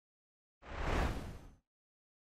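A whoosh transition sound effect: a single noisy swell lasting about a second, starting about half a second in and fading out.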